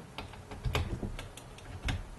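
Patch cable plugs clicking in and out of the jacks on a modular synthesizer panel: a string of sharp clicks, two of them heavier with a low thud, one just under a second in and one near the end.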